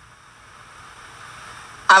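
Faint, steady hiss of video-call audio between spoken lines, swelling slightly until a woman starts speaking near the end.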